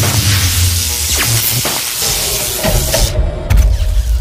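Loud explosion-like sound effect: a wide hiss with crackles and a low rumble that cuts off a little after three seconds, then a low thump near the end.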